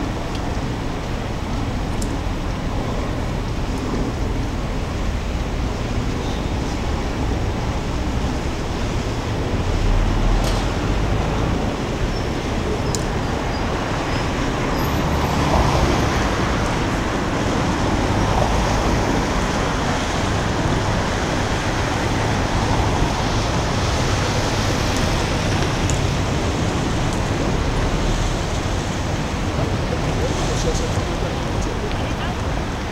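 Steady city road-traffic noise with a low rumble, swelling slightly as heavier vehicles pass about a third of the way in and again around halfway.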